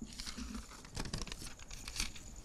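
Paper pages of a large book rustling and crackling faintly as they are turned and handled, with a few small clicks.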